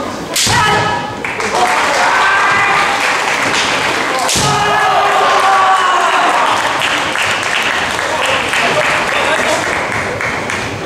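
Kendo match: a sharp crack of a bamboo shinai strike about half a second in, then long drawn-out kiai shouts from the fencers. A second strike comes about four and a half seconds in, again followed by sustained kiai, over the echoing hubbub of a gymnasium.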